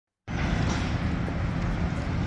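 Steady outdoor urban background noise, a low rumble with a faint steady hum, starting a moment in.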